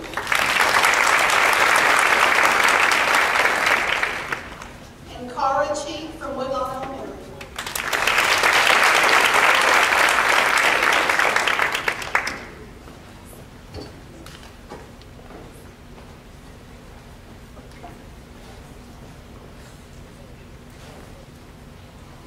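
Audience applauding in two rounds of about four to five seconds each, with a short spoken announcement between them; the applause stops about twelve seconds in.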